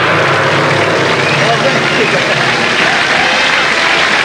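A large stage gong rings out after a hard mallet strike, a loud steady wash of sound, mixed with studio audience applause: the signal that an act has been gonged off.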